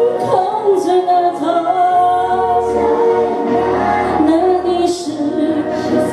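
A woman singing a slow Mandarin pop ballad into a microphone over musical accompaniment.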